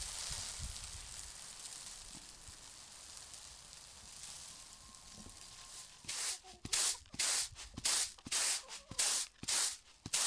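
Grain poured from a raised woven basket, falling with a steady hiss that slowly fades. About six seconds in it gives way to rhythmic swishing of grain tossed in a flat woven winnowing basket, about two strokes a second.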